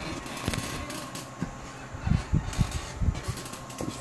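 Handling noise on an electronics bench: irregular knocks, bumps and rustles, several close together in the middle, over the steady hum of the amplifier's cooling fan.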